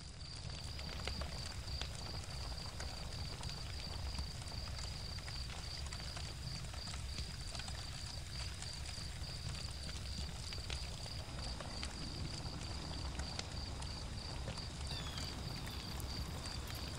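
Night woodland ambience: crickets trilling steadily at a high pitch over a low rumble, with scattered faint crackles from a campfire. The sound fades up from silence at the start.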